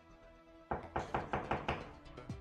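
A quick run of sharp knocks on a door, about six a second, starting just under a second in, over soft background music.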